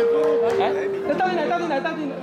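Chatter: several voices talking over one another, with one voice drawing out a long held sound in the first second.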